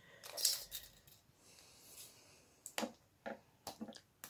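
Small retractable tape measure being handled and its tape pulled out of the round case: a short rasping pull about half a second in, then several sharp clicks in the last second and a half.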